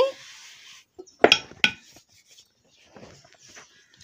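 Two sharp clicks against the rolling board, a third of a second apart, as stuffed paratha dough is pressed and handled on it, followed by faint soft rubbing of dough on the floured board.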